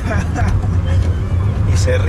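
Steady low rumble of a car's engine and road noise heard from inside the moving cabin, with faint voices over it.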